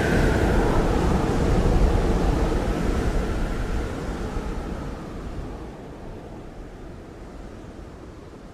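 A steady rushing noise, like wind or surf, fading out gradually over several seconds.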